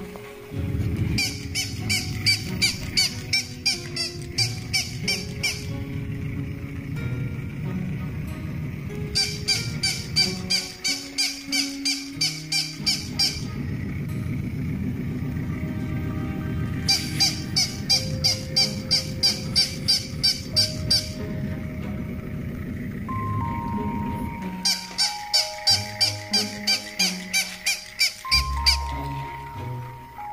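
Battery-operated walking plush toy dog yapping in four bursts of rapid, evenly repeated high electronic yaps, about three a second and each burst a few seconds long, over background music.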